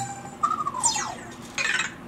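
Anki Vector robot's electronic sounds answering its wake word: a short steady beep, then a falling chirp about half a second in, and a brief noisy burst near the end.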